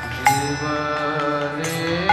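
Devotional kirtan music: a voice holding and gliding through long notes over a harmonium drone, with a few sharp percussion strikes.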